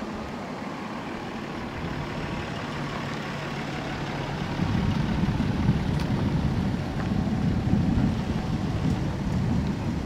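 A pickup truck driving slowly past close by: a low engine sound that grows louder about halfway through as the truck comes near, and stays loud while it passes.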